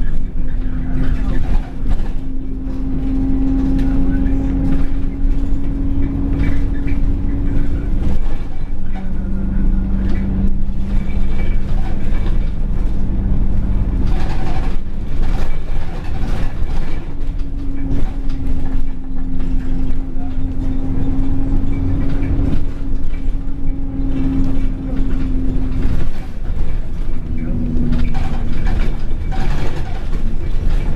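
Alexander Dennis Enviro 200 single-deck bus heard from inside the passenger cabin while under way: its diesel engine and drivetrain run with a steady whine that drops in pitch about eight seconds in and rises again about halfway through, over a low rumble and road noise.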